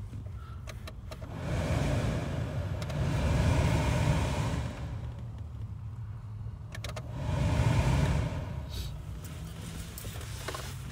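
Dashboard blower fan being run as a check after a blower motor resistor replacement, over a steady low hum. The rush of air swells twice, from about a second in to about five seconds and again around eight seconds, with a few clicks just before the second swell.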